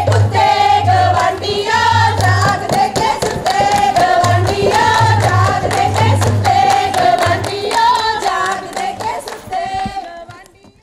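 A group of women singing a Punjabi giddha boli in chorus to steady, rapid hand clapping, about three to four claps a second. It breaks off at the end.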